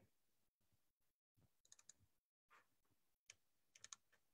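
Near silence broken by a few faint, short computer clicks, a quick run of them near the end, as a file is found and opened.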